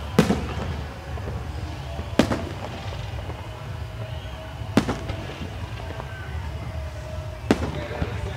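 Aerial firework shells bursting in the night sky: four sharp bangs about two to three seconds apart, each with a short echoing tail, over a steady low rumble.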